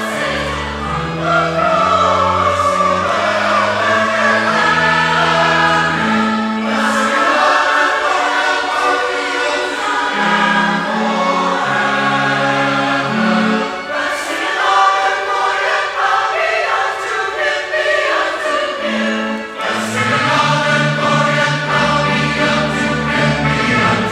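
Mixed church choir of men and women singing with instrumental accompaniment. A low bass line under the voices drops out for a few seconds in the middle and comes back near the end.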